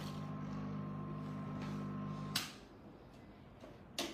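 A steady electrical or motor hum that cuts off with a sharp click about two and a half seconds in. Quieter room sound with a few light clicks follows.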